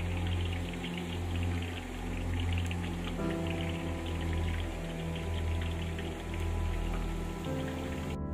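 Oil sizzling and crackling steadily as garlic chicken legs fry in a wok, under background music with sustained notes that change about three seconds in and again near the end.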